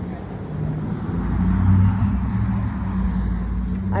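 A passing motor vehicle's engine rumble, with a low steady hum, growing louder about a second in and then holding.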